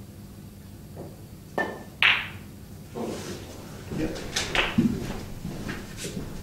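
A snooker cue tip strikes the cue ball, and a moment later the cue ball hits the object ball with a sharp, ringing click, the loudest sound here. Smaller knocks and low thuds follow as the balls run on and drop.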